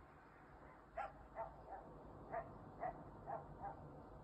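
A distant dog barking: about seven short, faint barks in quick pairs and threes from about a second in.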